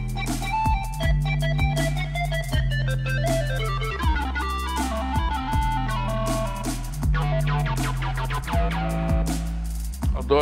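Roland Fantom 7 synthesizer played live with a layered Scene: quick runs of notes over held bass notes that change every second or so, with drums.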